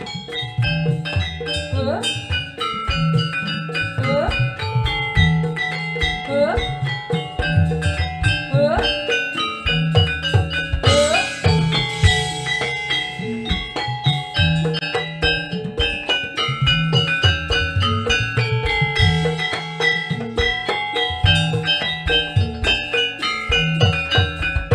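Javanese gamelan music accompanying a dance: bronze metallophones ring out a melody of overlapping notes over steady drumming.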